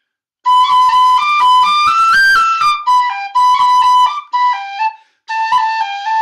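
Tin whistle playing a quick melody of short notes in a high register, starting about half a second in, with a brief break near the end before a held note.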